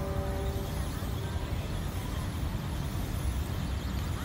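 Steady outdoor urban background noise, mostly a low rumble of distant traffic. A few steady ringing tones die away within the first second.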